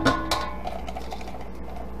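Spatula scraping and knocking chopped cabbage out of a plastic food processor bowl, with two sharp knocks right at the start and light scraping after, over a steady low background hum.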